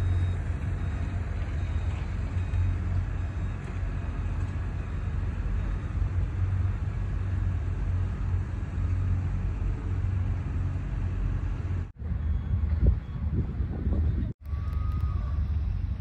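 Steady low rumble of distant vehicle and machinery noise, with no voices. It cuts out suddenly twice near the end.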